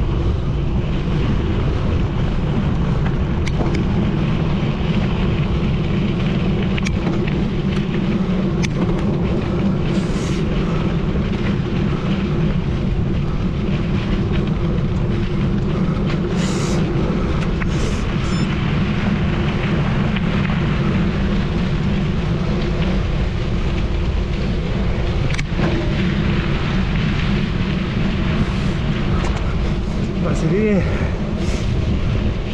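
Wind buffeting a GoPro Hero 9's microphone over the rumble of mountain bike tyres on a dirt and gravel road at about 20–30 km/h. The roar is steady, with a few faint ticks scattered through it.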